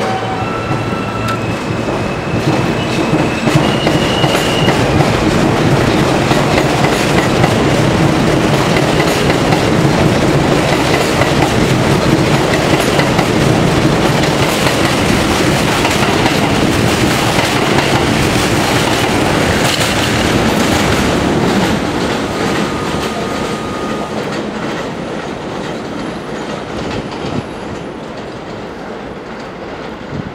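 R160 subway train pulling out of the station. Its electric propulsion whines upward in short steps as it starts, then the cars rumble and clack over the rail joints as they pass. The sound fades as the last car leaves, toward the end.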